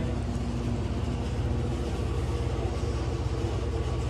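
Steady low background hum and rumble with a few faint steady tones, unchanging throughout and with no speech.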